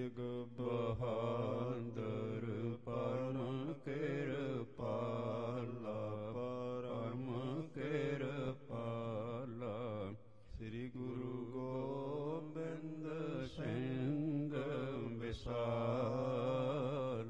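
A man chanting devotional verses in long, drawn-out melodic phrases with a wavering pitch, pausing briefly for breath, the longest pause about ten seconds in.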